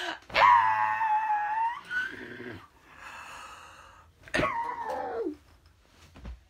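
A young woman's wordless high-pitched shriek lasting over a second, then, about four seconds in, a shorter cry that slides steeply down in pitch.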